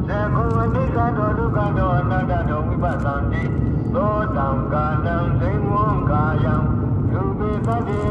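A voice chanting in long, sliding, held tones, sounding thin, as if played through a car's speakers. Under it runs a steady low rumble of car engine and road noise.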